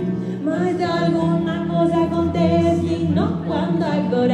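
A vocal ensemble singing in harmony, holding sustained chords while upper voices slide and waver above them.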